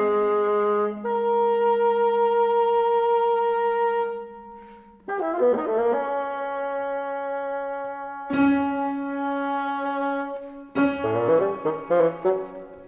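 Contemporary chamber ensemble with solo bassoon playing a concerto: long held wind chords, then a sudden loud new chord about five seconds in that is sustained and swells. Quick accented notes come in near the end.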